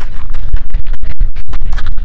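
Loud, irregular scratchy crackling over a deep rumble.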